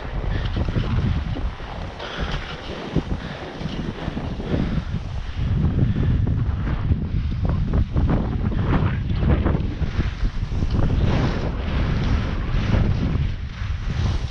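Wind buffeting the microphone of a skier's camera while skiing downhill, with the scrape of skis over packed snow. It gets louder about five seconds in as the skier picks up speed.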